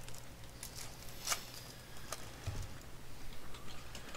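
Trading cards being handled and slid past each other by hand: faint scattered rustles and light clicks, the loudest about a second in, over a steady low electrical hum.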